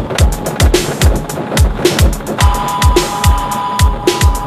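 Electronic body music (dark electro) from a DJ mix: a deep kick drum hits about three times a second with sharp hi-hat clicks, and a sustained synth tone comes in about halfway through.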